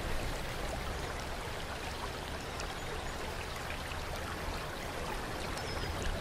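Water running steadily into a stone bath pool, a continuous trickle with faint scattered drips.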